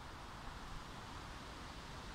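Faint, steady outdoor background noise: an even hiss over a low rumble.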